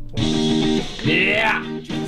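Electric guitar part playing loudly over the studio monitors, starting just after the beginning, with notes sliding down in pitch about halfway through.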